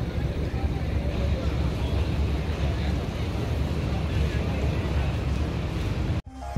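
Steady low rumble of heavy vehicle engines and road traffic, with a constant noisy hiss over it.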